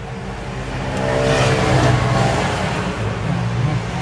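A motor vehicle's engine running nearby, getting louder over the first second or two and then holding steady.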